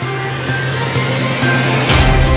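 News-intro theme music: sustained synth notes over a steady low tone, with a rising whoosh that builds to a hit near the end.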